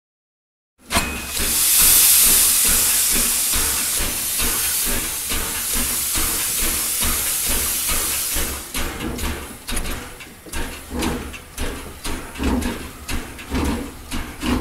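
Steam hissing loudly and steadily from a narrow-gauge steam locomotive, starting suddenly just after the opening second. After about eight seconds the hiss gives way to a run of irregular clicks and knocks with low thumps.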